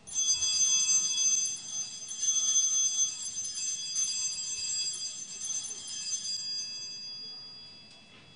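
Altar bells (Sanctus bells) rung for the elevation of the consecrated host: a cluster of small bells shaken for about six seconds, then ringing away to nothing near the end.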